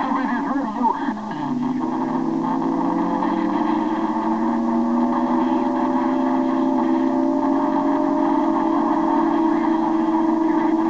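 A Yaesu transceiver's speaker receiving a strong signal on the CB band. A second of warbling, garbled radio audio gives way to several steady whistle tones, low and overlapping, that creep slowly upward in pitch: the heterodyne of carriers beating against each other.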